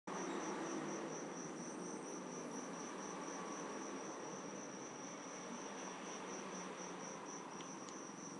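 Crickets chirping in a steady, high, evenly pulsed trill over a constant background hiss.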